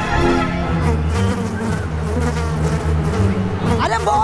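Tense dramatic background score: a low, pulsing, buzzing drone under sustained tones. Near the end, a rising swell leads into voices.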